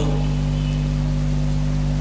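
Steady low electrical hum with faint hiss, unchanging throughout, from the recording or sound system.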